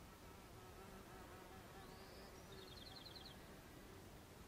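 Faint buzzing of a flying insect, its pitch wavering, with a brief high chirp and then a quick high bird trill about halfway through.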